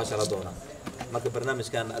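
A man talking in Somali in a relaxed conversation, with short bursts of speech and pauses.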